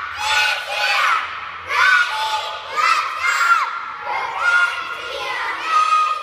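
A group of young cheerleaders shouting a cheer together in short yelled phrases, about one a second.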